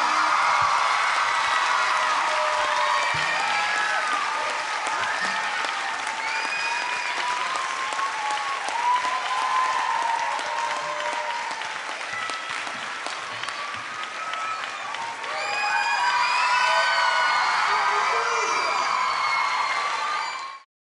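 Audience applauding and cheering at the end of a live song, with shouts and whoops rising over the clapping. The applause eases off mid-way and swells again about fifteen seconds in.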